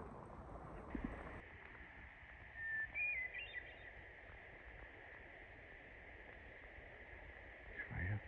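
A single flute-like songbird phrase about three seconds in: a held note, then a quick run of higher notes, faint over steady background noise. A small knock comes about a second in.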